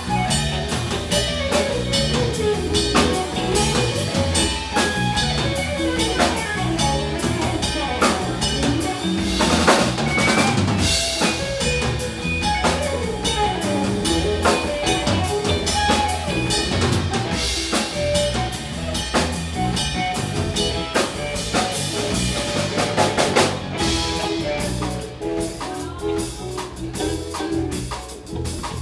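Live instrumental jam by a band of drum kit, electric guitar and electric bass, with busy drumming under a wandering guitar line. The drumming thins out near the end.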